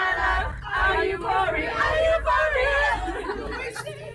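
A busload of people talking and shouting over one another, loud and unintelligible, over the low steady rumble of the coach.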